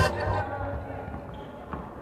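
Live court sound in a large sports hall: a basketball bouncing on the floor amid players' voices, as loud backing music drops away in the first half second.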